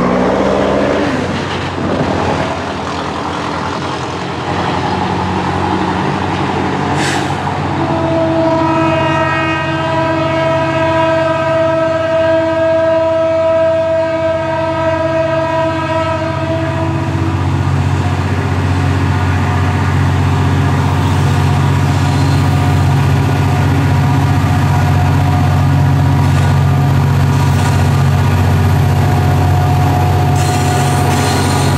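Diesel freight locomotive sounding its horn in one long chord of several tones, lasting about nine seconds from about eight seconds in, over the steady rumble of its diesel engine. The rumble grows louder as the loaded train draws close.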